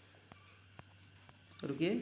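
A steady, high-pitched insect chirring, typical of crickets, runs in the background with a few faint clicks. A man's voice comes in near the end.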